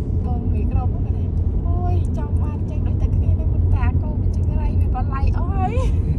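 Steady low rumble of a car's engine and tyres heard from inside the cabin while driving, with voices talking quietly over it.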